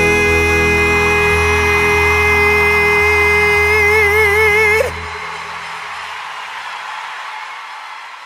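A live band finishes a song with a male singer holding a long final note that gains a wide vibrato before the band cuts off together about five seconds in. Audience applause and cheering follow and fade out.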